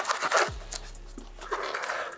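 A blunt knife scraping and slicing through thick sticky tape along the seam of a polystyrene box lid. The scrapes come quickly in the first half second, then the sound drops to faint rubbing.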